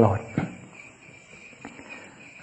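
Insects chirring steadily in the background, a thin high constant tone, with the tail of a man's spoken word at the start.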